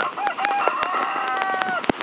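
A rooster crowing once, one long call lasting about a second and a half, over a few light clicks, with a sharp tap near the end.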